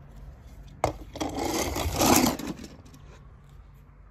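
A click about a second in, followed by a rasping scrape lasting about a second and a half.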